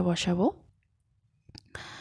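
A woman's voice finishing a sentence, then a pause broken by a couple of sharp clicks and a short stretch of hiss.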